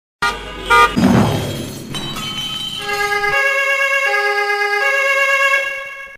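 Traffic sound effect under the traffic-report title card. Two short car-horn honks and a vehicle whooshing past come first, then several horns are held together in one long blare that stops abruptly near the end.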